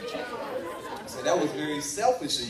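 Speech only: indistinct voices and chatter, with a louder stretch of speaking in the second half.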